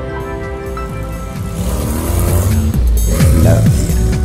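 Background music with a car driving past, growing louder and loudest about three seconds in.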